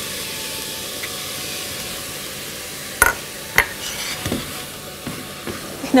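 Chopped onion sizzling in melted butter in a stainless steel saucepan, with two sharp knocks about three seconds in and lighter scraping and stirring clicks after. The onion is being softened, not browned.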